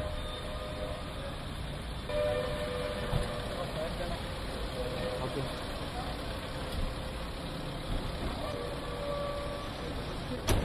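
Engine of a silver SUV running as it rolls slowly along at low speed, with voices in the background.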